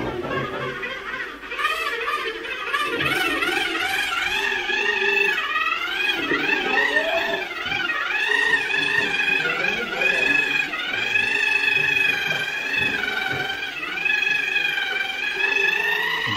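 Electric rotary plaster float, a disc-type wall smoothing machine, running against fresh cement render. Its high whine wavers up and down in pitch about once a second as it is pressed and moved over the wall.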